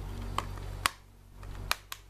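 Plastic Blu-ray case snapping shut with a sharp click just under a second in. A few lighter clicks come from handling the case.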